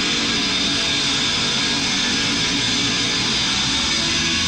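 Heavy metal band playing live, with distorted electric guitars and drums, loud and continuous.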